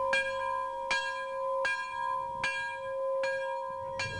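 A bell-like ringing tone struck repeatedly, a little more than once a second, each strike renewing a steady ring.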